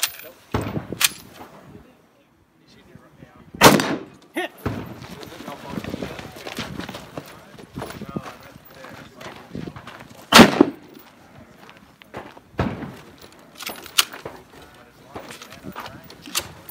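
Single rifle shots from an Israeli light-barrel FAL in 7.62x51 NATO, fired a few seconds apart at steel targets. The loudest shots come about four and ten seconds in, with quieter reports and movement noise between them.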